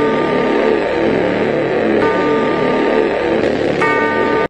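Loud, dense logo-jingle music, with a high held chord that comes back about two seconds in and again near the end.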